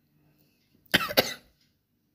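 A man coughs once, a quick double cough about a second in.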